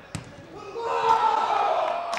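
A football kicked hard in a shot at goal: one sharp thud just after the start. Players' shouts rise from under a second in and carry on.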